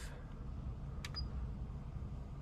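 A single sharp click about a second in, with a brief faint high tone just after it, over a faint steady low hum.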